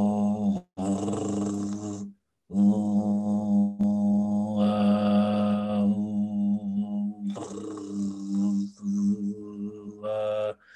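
A man holding a long 'uh' vowel on one steady pitch, in several drawn-out breaths, as his tongue slides back toward the uvula to demonstrate the French/German uvular R. Around five seconds in a raspy hiss of friction joins the vowel where the tongue back reaches the uvula, and it fades again after.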